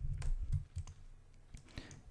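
Computer keyboard and mouse clicking: a few quick clicks in the first second, then only faint scattered ones.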